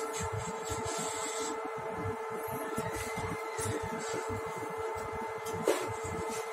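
Metro train running between stations, heard from inside the car: a steady whine at several fixed pitches over a low, uneven rumble from the wheels and track. A short knock comes near the end.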